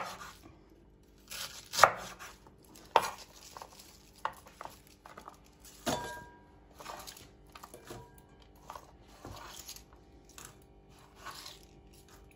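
Kitchen knife slicing through a raw white cabbage on a wooden cutting board: scattered crisp crunches and knocks of the blade against the board, irregularly spaced. About six seconds in, a brief ringing clink of kitchenware.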